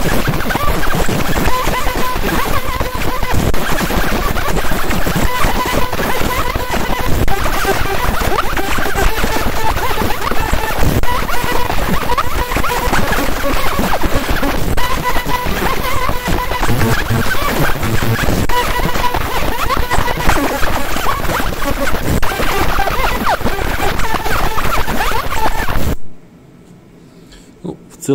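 50 W JPT pulsed fiber laser marker engraving fired clay: a loud, dense crackling hiss of the beam ablating the surface, with faint steady tones underneath. It cuts off suddenly about two seconds before the end as the engraving pass finishes.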